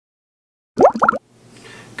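Two quick rising bloop sound effects, each a short upward pitch sweep, about a second in. They follow digital silence and are followed by faint room tone.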